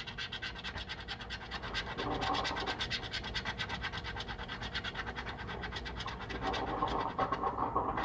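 A coin scratching the coating off a paper scratch-off lottery ticket in quick, even back-and-forth strokes.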